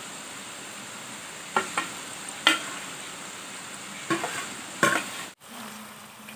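Maida namkeen pieces deep-frying in hot oil in a steel kadhai: a steady sizzle, broken by a few sharp knocks of a spoon against the pan as the pieces are turned. The sound cuts out for a moment near the end.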